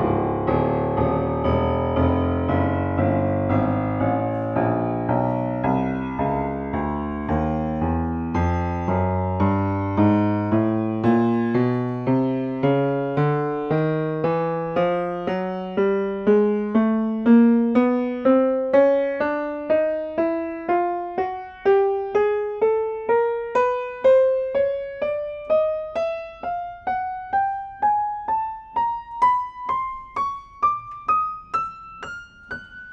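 Yamaha G3E grand piano played one key at a time, climbing steadily from the deep bass toward the treble at about two notes a second, each note struck and left to ring and decay. It is a key-by-key check that the tone is even across the keyboard, which the pianist judges very even from note to note.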